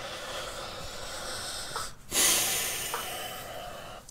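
A man's breathy laugh through the nose: a long, steady exhalation, a brief break, then a second, louder exhalation that fades away.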